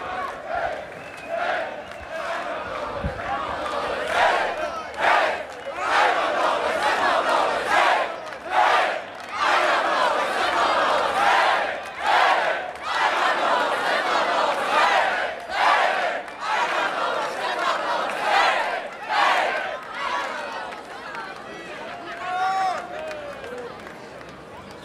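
A large crowd of football fans chanting and singing in unison, in loud rhythmic shouts about once a second, fading off near the end.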